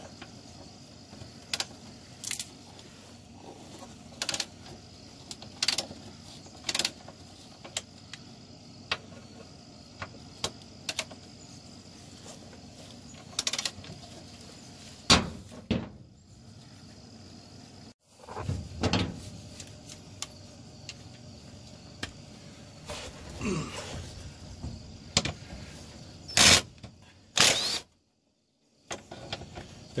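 Hand ratchet and 13 mm socket loosening the rear crossmember bolts under a car: scattered single clicks and metal clinks, with a few louder clanks in the second half.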